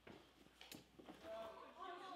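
Faint background chatter of several people talking, starting to be heard a little over a second in, with a couple of light clicks before it.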